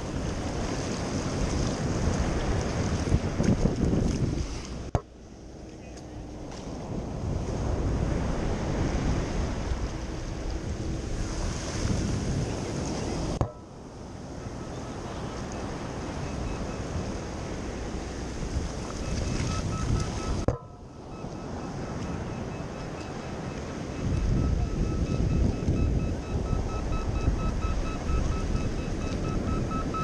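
Surf washing in and out around the legs in shallow water, with wind buffeting the microphone. The rush breaks off sharply three times, about 5, 13 and 20 seconds in.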